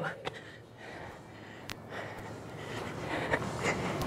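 Hard breathing from exertion, with a few light taps of hands and feet on the rubber gym floor, during a burpee-style floor exercise.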